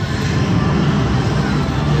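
Slot machine sound effect from its speakers: a steady low rumble with a noisy wash as the dragon feature animation sweeps across the reels.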